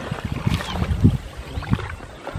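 Several people's feet splashing and sloshing through shallow, muddy water as they wade, in uneven bursts.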